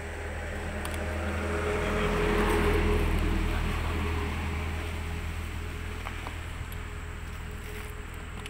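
A motor vehicle passing by: a low engine hum that grows louder to a peak about three seconds in, then slowly fades.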